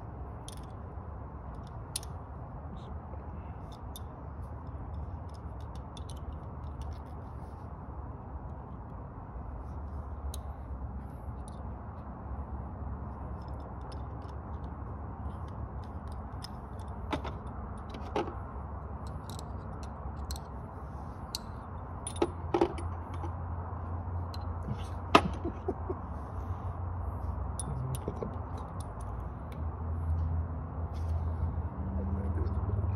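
Scattered sharp metallic clicks and clinks of a wrench being worked at a headlight bolt deep in the engine bay, over a steady low rumble. The clicks come more often from about the middle on, and the loudest falls near the end.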